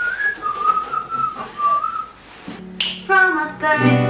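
A person whistling a short melody, one clear wavering tune line, as a pop song opens. Near the end a low held note and acoustic guitar come in.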